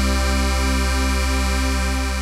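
The closing held chord of a cumbia song: a synthesizer keyboard chord sustained over a deep bass note, its middle tones pulsing evenly.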